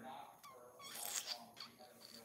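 A person's faint, soft voice sounds, brief and high-pitched, well below normal talking level.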